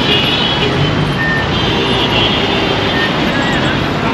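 Busy multi-lane city street traffic: cars and a minivan driving past, with a steady, continuous wash of engine and tyre noise.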